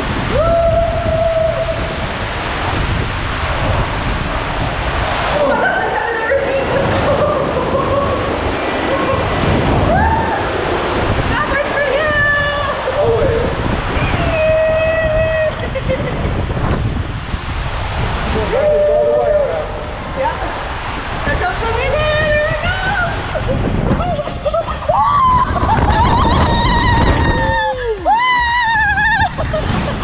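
Water rushing and sloshing as an inflatable raft slides down a water-slide tube and flume, heard on a GoPro mic close to the spray. Riders shout and whoop through the run, most of all near the end.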